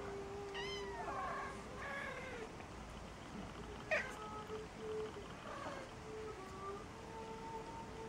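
Maine Coon cats giving several short meows that rise and fall in pitch: one about half a second in, another near two seconds, and a sharper, brief one about four seconds in.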